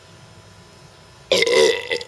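A man belching loudly once, about a second and a quarter in, after a swig of beer.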